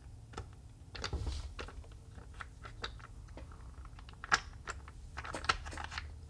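Small wooden puzzle blocks clicking and tapping against each other and the wooden tray as they are picked up and set into place: a scatter of light taps, with a sharper knock about four seconds in and a quick cluster of taps near the end.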